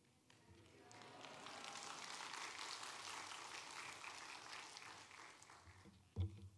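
Faint applause from a congregation, a dense patter of clapping that swells about a second in and dies away near the end, welcoming the guest speaker to the pulpit.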